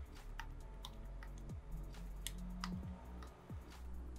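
Light plastic clicks, a scattering of them, as the tiny DIP switches on a Sonoff 4CH Pro R2 circuit board are slid over with a screwdriver tip.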